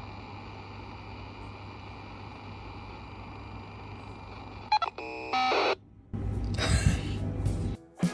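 Low steady hum of room tone, then about five seconds in a short run of electronic beeps in stepped pitches, followed by a loud rushing noise for about a second and a half that cuts off suddenly.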